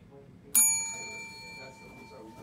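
Chrome desk service bell struck once by hand: a single ding about half a second in that rings on and fades slowly. It is the call bell that patients ring to summon the lab staff for a timed glucose test.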